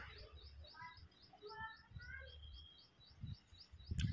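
Faint birds chirping, with a high note repeated about four times a second and a few short chirps in the middle, over a low hum.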